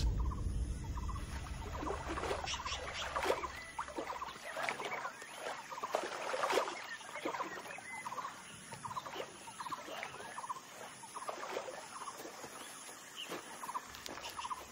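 Many short, scattered animal calls, a few each second, over quiet outdoor ambience, with a low hum that fades out in the first few seconds.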